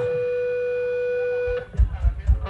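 A single amplified electric guitar note held steady through the stage amp, stopping about a second and a half in. It is followed by a few heavy, deep thumps from the stage rig.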